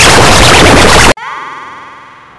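Harsh, extremely loud distorted noise from an audio-effects edit cuts off abruptly about a second in. Quieter electronic tones follow and slowly fade.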